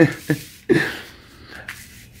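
A man's short breathy laugh, a few puffs of breath that fade off within the first second.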